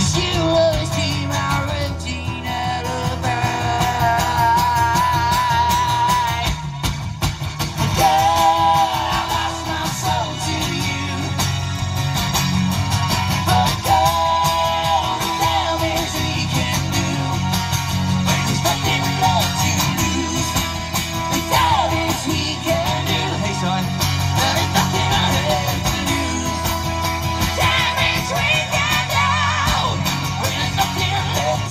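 Live song: an amplified acoustic guitar strummed with a sung vocal over it, the singer holding long notes with vibrato.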